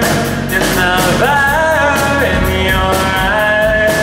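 Live hard rock band playing: a lead vocalist sings a melody with long held notes over electric guitar and drums with cymbals.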